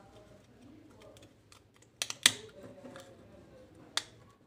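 Small clicks and light taps from handling the plastic cover, housing and circuit board of a Bluetooth speaker being reassembled. Two sharp clicks about two seconds in are the loudest, with another just before the end.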